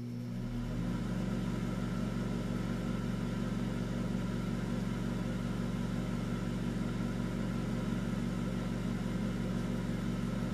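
A steady low hum with a buzzy edge, made of several even tones, reaching full strength within the first second and holding unchanged.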